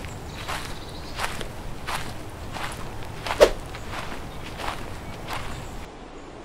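Footsteps walking on a dirt path at a steady pace, about three steps every two seconds, with one louder, sharper step about halfway through.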